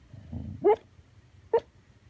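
A sleeping dog whimpering: a low grumble, then a loud squeak that rises sharply in pitch, and a second, shorter squeak under a second later.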